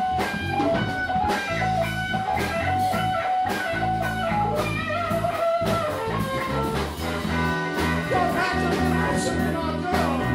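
Live rock band playing: electric guitar, bass guitar and a Yamaha drum kit, with a steady beat.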